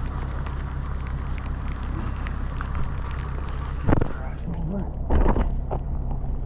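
Steady rushing noise of rain and wind on the microphone, with low rumble from traffic on the wet road. Two sharp thumps come about four and five seconds in.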